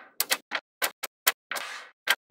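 Small magnetic balls clicking against one another in a quick, uneven string of about six sharp clicks. Near the end comes a short rattling scrape as a row of balls is pushed against a slab of them.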